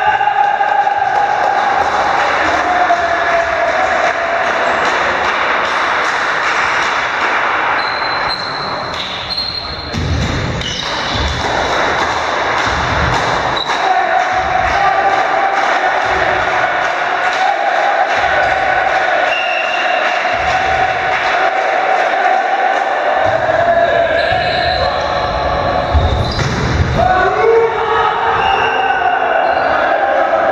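Indoor volleyball play in an echoing sports hall: a few sharp hits of the ball and players' shouts, with a steady pitched tone running under much of it.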